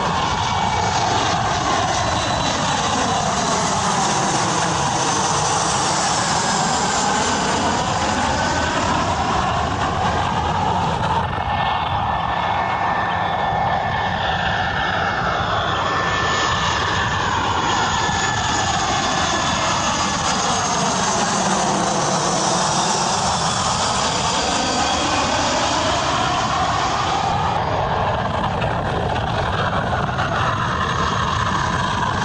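Airplane engine noise: a steady, loud rushing with a slow whooshing sweep that dips in pitch and climbs back, like a plane passing overhead. The sweep happens twice, about sixteen seconds apart, as if the same recording repeats.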